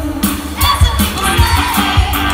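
Live pop band music played loud through a concert hall's PA, with a steady, evenly repeating drum beat.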